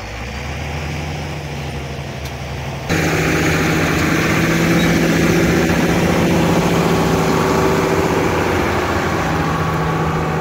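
International Harvester 1086 tractor's turbocharged six-cylinder diesel running as the tractor drives up close. It gets suddenly louder just under three seconds in, then runs steadily.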